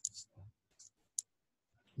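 A quiet pause with a few faint breath-like sounds and a single sharp click a little over a second in, a computer mouse click.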